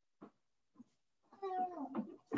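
A couple of faint clicks, then a short drawn-out call that falls in pitch, picked up through a participant's open microphone on the video call.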